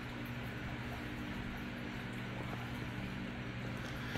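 A steady low machine hum made of a few fixed low tones over a soft hiss.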